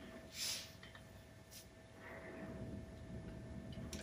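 A plastic squeeze bottle of honey being squeezed, giving a soft short hiss about half a second in and a fainter one a second later, over a faint steady hum.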